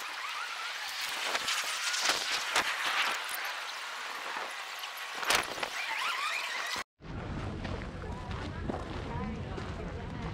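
Outdoor park background of distant voices, with short high chirps and squeals and a few brief sharp sounds. It cuts off abruptly about seven seconds in and gives way to a fuller background with a steady low rumble.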